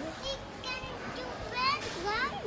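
Young children's high-pitched voices, chattering and exclaiming without clear words, with a couple of quick rising calls in the second half.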